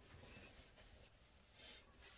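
Near silence, with a faint, brief rustle near the end as fingers rub and adjust the hair of a human-hair-blend lace wig.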